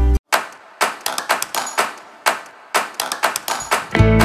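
Stainless-steel canisters being handled and set down on a hard floor: a string of irregular metallic knocks and clinks, several a second.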